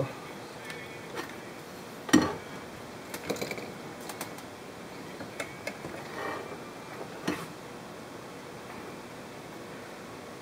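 Handling noise from gloved hands working a multimeter's test probes against a metal fuel sender unit: a few scattered light knocks and clicks, the loudest about two seconds in, over a steady low hiss.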